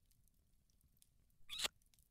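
Near silence, then a brief wet kissing sound from lips about one and a half seconds in.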